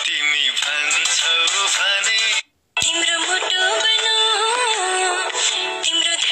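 A song with a singing voice over the backing music. It cuts out completely for a moment about two and a half seconds in, then carries on with a sung melody.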